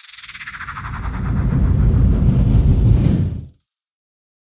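Logo intro sound effect: a high sweep falling in pitch at the start over a low rushing swell that builds for about three seconds, then cuts off suddenly.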